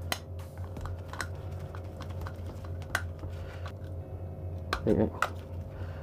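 Scattered light clicks and taps of a screwdriver and wires being handled in a plastic 32 amp commando plug while its terminals are wired, over a low steady hum.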